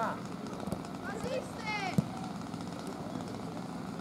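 Scattered shouts and calls from people around a football pitch, with one sharp knock about halfway through that is the loudest sound.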